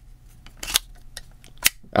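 Spring-loaded sliding card-slot door of a VRS Damda Glide Shield phone case worked one-handed, giving two sharp plastic clicks about a second apart as it slides and snaps into place.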